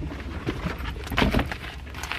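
Handling noise as a bag and shiny black platform boots are moved about: rustles and light knocks, clustered a little over a second in, over a steady low hum.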